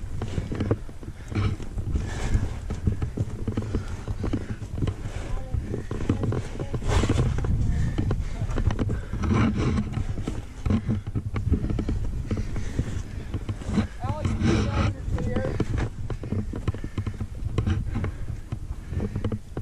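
Wind rumbling on the camera's microphone, with repeated scrapes and knocks of hands and feet on rock and a climber's heavy breathing, strongest about three-quarters of the way through.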